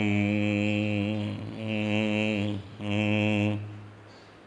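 A man's low voice intoning three long notes, each held on one steady pitch, in a chant-like hum with short breaks between them.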